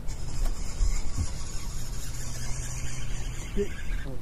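A steady low mechanical hum under a hiss, with two dull low thumps about a second in and a brief pitched sound near the end.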